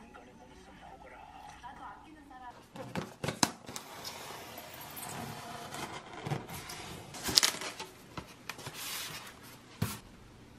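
A styrofoam delivery box being opened and its packaging handled: irregular scrapes, rustles and sharp knocks, the loudest about seven and a half seconds in.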